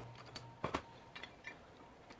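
A few faint, short clicks and light knocks of metal stock being handled in a bench vise, the loudest a little under a second in.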